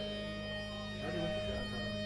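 Steady hum and a held tone from a band's amplified stage gear, waiting to start, with faint voices about a second in.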